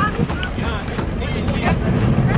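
Strong wind buffeting the microphone, with a low rumble underneath that thickens in the second half.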